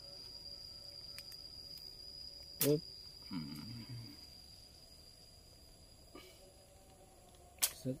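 Steady high-pitched insect drone that stops about a second before the end, with a short vocal sound about two and a half seconds in and a sharp snap near the end as a chalk line is snapped onto the coconut-trunk slab.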